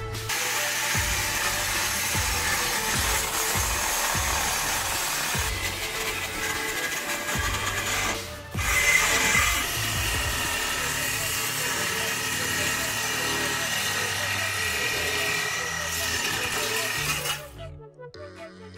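Handheld power saw cutting through a steel exhaust pipe along the factory tip's weld. It runs steadily with a brief pause about eight seconds in, then stops near the end as the cut tip comes free.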